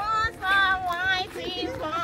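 A woman's singing voice holding long, wavering notes.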